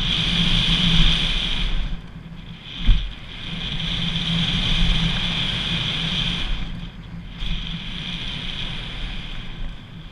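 Riding noise from a mountain bike descending a dirt jump trail: wind on the camera's microphone and tyres on hard-packed dirt, with a high whir that drops out briefly about two and seven seconds in. A single sharp thump about three seconds in.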